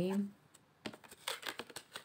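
A deck of tarot cards being shuffled by hand: a quick run of light snaps and clicks of card against card through the second half.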